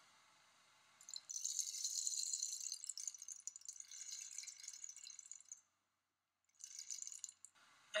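Hand-percussion rattle sound effect: a grainy cascade of fine, high ticks lasting about four and a half seconds. It breaks off for about a second, then comes back briefly.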